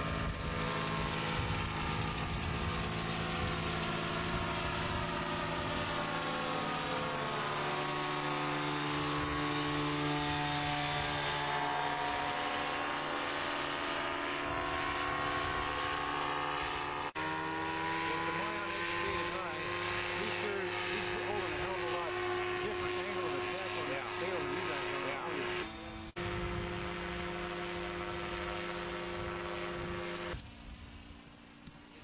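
Engine and propeller of a homemade powered parachute droning steadily in flight overhead. The pitch drops and climbs back as it passes, then wavers later on. The sound breaks off and resumes abruptly twice.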